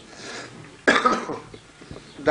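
A person coughs once, a sudden short burst about a second in that quickly fades.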